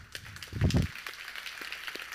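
Congregation applauding, a dense patter of many hands clapping. A short, loud low thud comes about half a second in.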